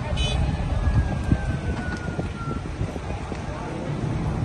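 A large fire's steady low rumble, with scattered crackles and pops, and a faint falling whistle in the first half.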